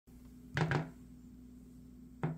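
Two quick finger taps on a smartphone lying on a wooden table, about half a second in.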